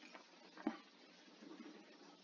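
Near silence: quiet room tone, with one short click about two-thirds of a second in.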